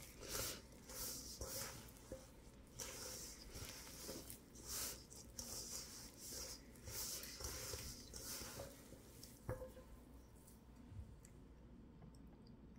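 Hand kneading crumbly butter-and-flour cookie dough in a stainless steel bowl: faint, irregular squishing and crumbling strokes, with one sharp click about nine and a half seconds in.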